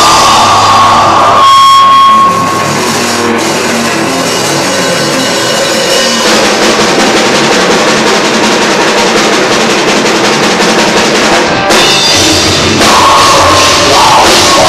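Rock band playing live and loud, electric guitars over a drum kit, in an instrumental passage without vocals. The lowest notes drop away about a second and a half in and return near the end.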